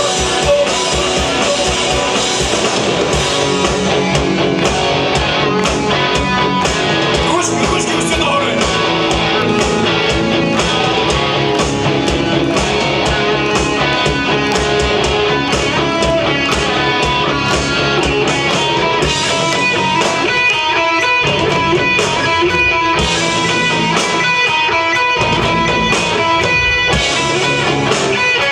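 Live rock band playing an instrumental passage: electric guitars, bass and drums on a steady beat, with no vocals. In the last third the bass and kick drop out for short stretches and come back in.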